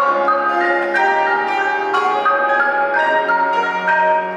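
Concert marimba played with mallets: a quick, steady stream of ringing notes from the first movement of a classical marimba concerto.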